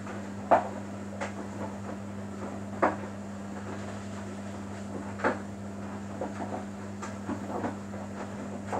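Samsung Bespoke AI WW11BB704DGW front-loading washing machine in its wash phase: a steady motor hum as the drum turns, with wet laundry tumbling and dropping in soft, irregular thuds every couple of seconds.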